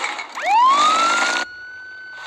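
A police siren in a cartoon soundtrack winds up about half a second in, rising quickly in pitch and then holding one steady high wail. Under it, a loud rushing noise cuts off suddenly about a second and a half in.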